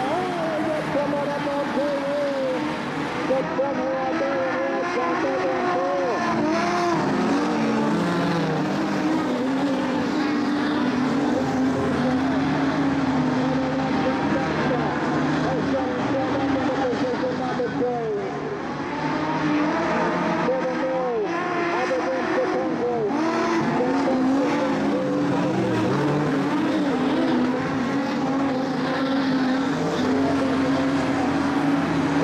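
Modified sedan race cars racing on a dirt speedway: several engines running at once, their pitch rising and falling as they rev through the turns and back off.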